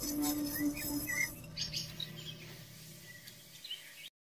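The last held note of an instrumental song fades out over the first second and a half, leaving quiet bird chirps.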